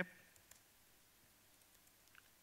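A few faint key clicks from a laptop keyboard as a short command is typed, over quiet room tone.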